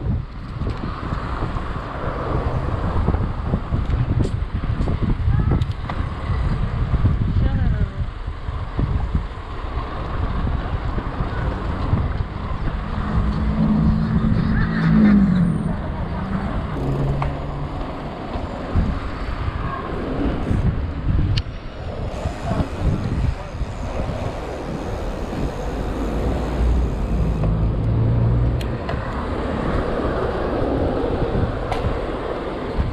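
Wind rushing over the microphone of a camera on a moving bicycle, with city car traffic passing alongside. Engine tones from passing vehicles stand out about halfway through and again near the end.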